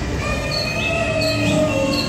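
The exhibit's background soundtrack: sustained high tones drifting slightly in pitch, with short chirps repeating about every two-thirds of a second, over a low steady hum.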